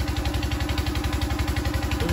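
An engine running steadily, a low hum with an even, rapid pulse.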